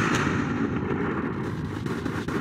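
A rumbling, boom-like sound effect that fades away slowly.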